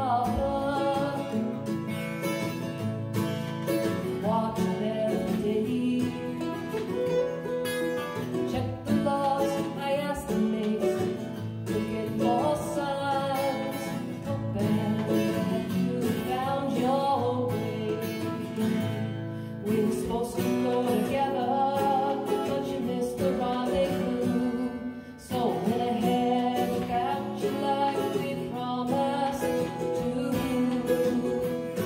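Folk duo performing: a woman singing, accompanied by mandolin and acoustic guitar.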